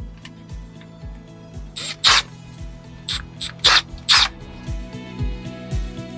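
Background music with a steady beat, over which a cordless drill with a step bit is run in four short bursts, reaming out a small plastic part.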